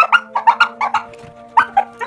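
Dog giving a quick run of short, high yips, several a second, with a brief pause a little past a second in, over steady background music.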